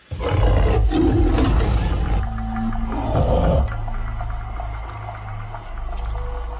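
A deep big-cat roar breaks in suddenly and is loudest in the first two seconds, over a low, steady droning music bed that carries on after it.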